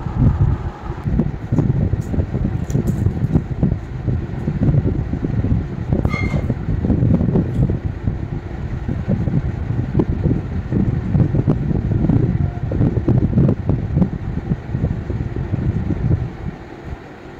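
Airflow from a pedestal electric fan buffeting the microphone: a loud, uneven low rumble that runs on without pause.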